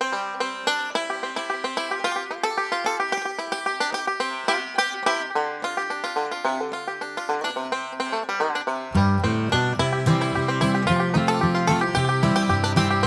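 Background music: a fast, busy tune of quick, sharply struck notes, joined by a bass part about nine seconds in.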